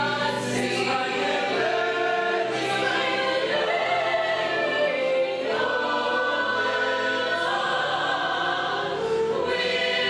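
A stage musical's full company singing the choral finale in harmony, with long held chords that shift every second or two.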